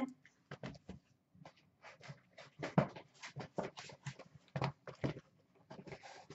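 Sealed cardboard boxes of trading cards being lifted from a shipping case and stacked on a glass counter: a string of short, irregular knocks and scuffs.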